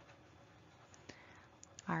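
A few faint, short clicks over near silence, one about a second in and two more shortly before a woman's voice starts a word at the very end.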